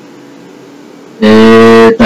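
A man's voice holding a long, loud, even-pitched "ehh" hesitation sound, starting suddenly a little over a second in, over a faint steady hum on the call line.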